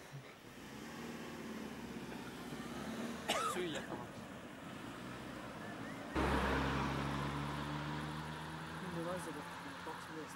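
Road traffic: a car's engine and tyres grow louder as it passes. About six seconds in the sound jumps suddenly to a louder, steady low engine drone with rumble, which slowly fades away.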